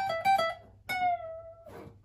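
Alvarez AF30CE steel-string acoustic guitar, played unplugged: a few quick high notes picked high up the neck, then a single high note about a second in that rings on and fades.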